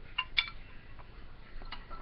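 Two sharp, slightly ringing clinks close together, then a few fainter ticks: hard parts of a knock-down display stand knocking together as it is being assembled.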